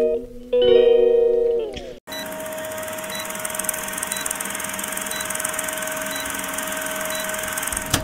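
A short plucked-string intro jingle with falling note sweeps stops suddenly about two seconds in. It is followed by an old-film countdown sound effect: a steady hiss with a single held tone and a few faint ticks, which cuts off just before the end.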